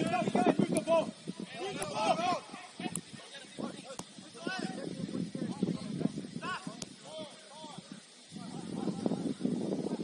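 Footballers calling out to each other across the pitch in raised, distant voices, with several sharp knocks of the ball being kicked.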